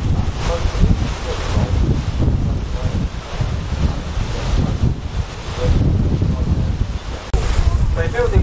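Gusty wind buffeting the microphone on an open boat, a heavy uneven rumble that swells and dips, over the wash of choppy harbour water.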